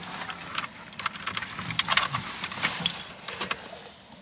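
A key bunch jangling and clicking at the ignition lock of a Lada Zhiguli as the key is fitted and handled, a run of light, irregular metallic clinks, before the engine is started.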